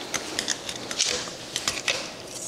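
Plastic Apimaye beehive frame being pried open by hand: a string of small, irregular plastic clicks and snaps as the clipped-together halves come apart.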